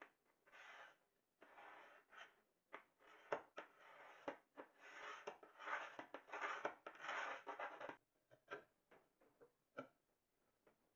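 A hand glass cutter scoring a thin sheet of glass along a wooden straightedge: a run of faint scratchy strokes, the longest about three seconds, with a few sharp clicks between them.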